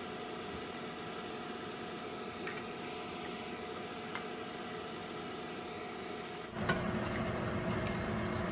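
A steady appliance hum with a couple of light clinks as a metal measuring cup tips gelatin mixture into an aluminium mold. About six and a half seconds in, a louder swishing starts as a wooden spoon stirs the hot gelatin in the pot.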